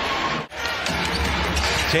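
Basketball arena game sound: a ball being dribbled on the hardwood over steady crowd noise. A brief drop-out comes about half a second in, then the same arena sound resumes.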